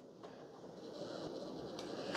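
Near-quiet room tone: a faint, even low hiss with no distinct sound event.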